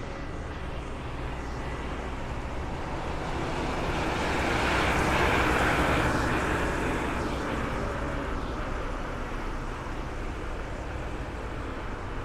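A large tri-axle coach passing close by on a city street. Its engine and tyre noise swells to a peak about halfway through and then fades, over a steady low rumble of traffic.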